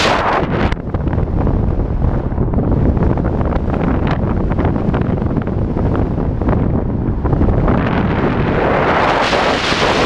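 Wind buffeting the microphone of a camera on a car driving down a mountain highway, a loud, rough rush that swells near the end.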